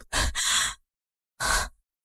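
A person's breathy, scoffing exhale-laugh, heard twice: a longer breath at the start and a short one about a second and a half in.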